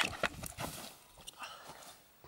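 A few sharp knocks and thuds in the first half-second or so, the loudest right at the start, then soft scuffling that dies away: a skateboard and a person tumbling onto grass in a fall.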